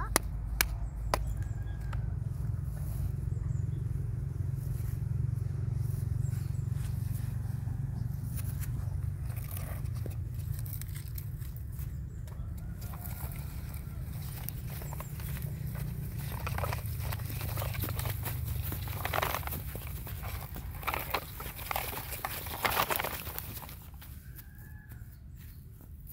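Outdoor ambience with a steady low rumble, and scattered rustling and light knocks from a plastic toy dump truck and shovel being handled and pushed over grass and gravel; the knocks are thicker past the middle.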